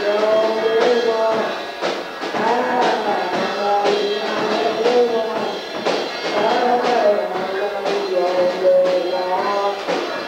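Rock music with a singing voice over drums, sounding thin, with almost no bass.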